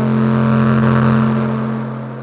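Electronic bass music: a held low synth bass tone under a noise swell that rises to a peak about halfway through and then fades away.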